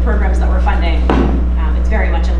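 A steady low electrical hum under a woman's speech, with one sharp knock about a second in.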